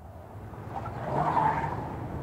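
A Mercedes-Benz saloon's engine running and its tyres rolling as it pulls slowly forward, fading in and swelling to its loudest about one and a half seconds in.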